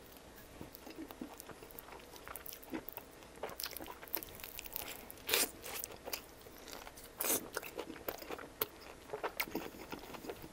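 Close-miked chewing of a bite of pizza crust with arugula: a run of crisp crunches and wet mouth clicks, with louder crunches about five and seven seconds in.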